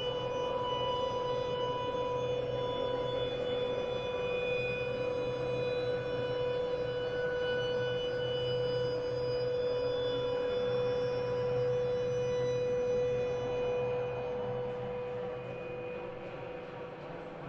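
Slow ambient drone music: one sustained tone held on a steady pitch with faint higher overtones and a soft low hum underneath, easing off a little near the end.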